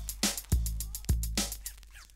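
Mid-1980s electro hip-hop record playing: a drum-machine beat with a deep, long kick about every 0.6 s and fast steady hi-hats, with short pitch-bending sounds between the beats and a brief drop-out near the end.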